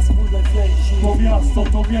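Live hip-hop music: a heavy bass beat with a rapper's voice over it.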